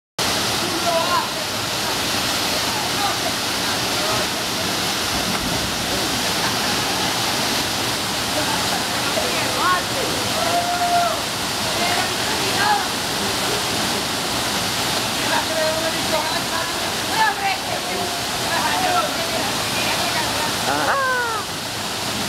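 Waterfall pouring down a rock chute in a steady, dense rush of water. Faint voices call over it, and near the end one voice gives a cry that falls in pitch.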